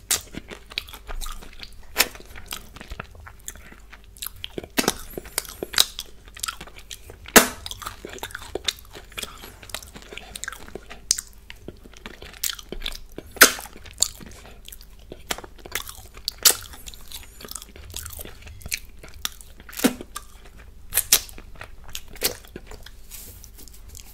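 Close-miked mouth sounds of a person eating a chocolate-topped cupcake with Smarties: chewing with irregular sharp crunches and wet clicks and smacks, a few louder ones scattered through.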